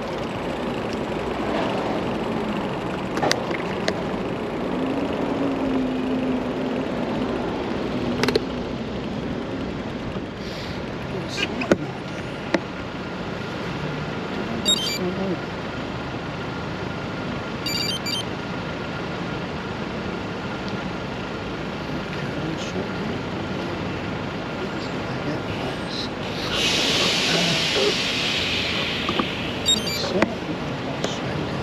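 City street traffic heard from a bicycle: cars passing and idling with a steady road-noise hiss, first while riding and then while waiting at a traffic light. A few sharp clicks come through, and a loud hiss lasting about three seconds comes near the end.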